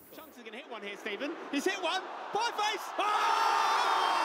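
Football match commentary from a broadcast playing at low level, a commentator's voice in short phrases; about three seconds in, a steady stadium crowd noise swells up beneath it.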